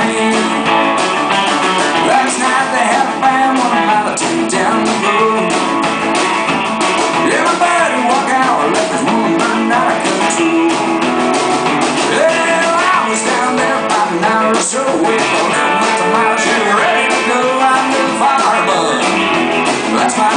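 Live country-rock band playing: electric guitars over a drum kit and bass, at a steady loud level with bending guitar lines, recorded from the audience, thin in the low end.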